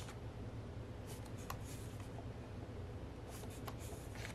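Pages of a paper photobook turned by hand: soft, brief paper rustles and flicks, a few about a second in and a cluster near the end. A steady low hum runs underneath.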